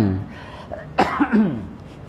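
A man coughs once, clearing his throat, about a second in: a sudden harsh burst followed by a short voiced sound that falls in pitch.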